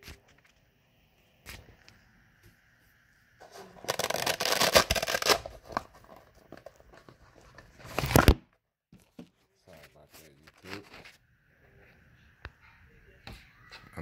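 Rustling, scraping handling noise as the RC buggy's plastic body shell is taken off by hand: one burst of about two seconds starting about three and a half seconds in, a shorter one near eight seconds, and small clicks between.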